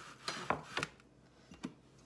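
A few light knocks and clicks of kitchenware being handled, about four short sounds spread over the first two-thirds, then quiet handling.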